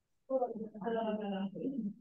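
Speech only: a person's voice over a video-call connection, starting about a quarter second in after a brief silence.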